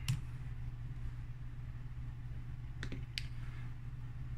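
Sharp clicks of a computer keyboard and mouse: one right at the start as the typed command is entered, and two more close together about three seconds in. A steady low hum runs underneath.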